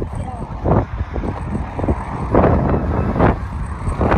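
Wind rumbling on the microphone, with children's short voices and exclamations coming through in bursts, loudest a little past halfway.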